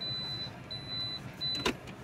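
A car's in-cabin reversing beeper sounding three high-pitched beeps of about half a second each with short gaps between them, the signal that the car is in reverse gear. A sharp click cuts off the last beep near the end.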